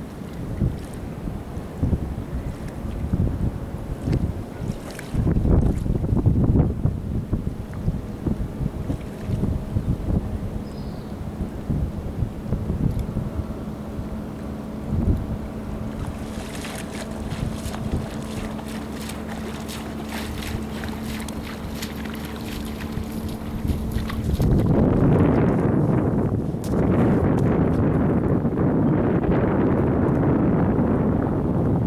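Wind buffeting the microphone in uneven gusts, heaviest over the last five or so seconds. A faint steady hum runs underneath through the middle stretch.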